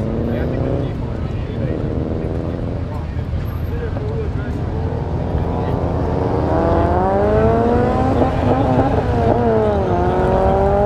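Car engines rumbling at a street-race start line, with one engine note climbing steadily in pitch from about halfway, wavering, dropping sharply just before the end and climbing again.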